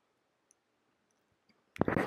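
Near silence: room tone with a few faint ticks. A voice starts just before the end.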